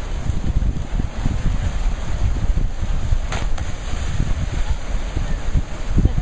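Wind buffeting the microphone in a steady low rumble over the wash of ocean surf against rock. A short sharp burst of noise comes a little past halfway.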